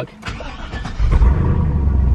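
A GMC pickup's engine with straight-piped exhaust starting: the starter cranks briefly, the engine catches about a second in, and it settles into a steady idle with a deep exhaust note. The sound is heard from inside the cab.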